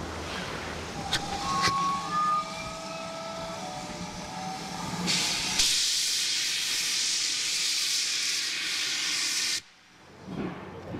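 Steam locomotives on the move: a few short faint whistle notes and two clicks, then from about halfway a loud steady hiss of steam blowing from the cylinder drain cocks of two GWR prairie tank engines double-heading a train. The hiss cuts off abruptly near the end.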